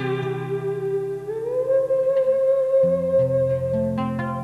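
Live song: a woman's voice holds a long note, slides up to a higher note about a second in and holds it, over acoustic guitar chords that change near the end.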